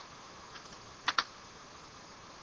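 Two quick clicks from a computer keyboard or mouse being worked, about a second in, over faint background hiss.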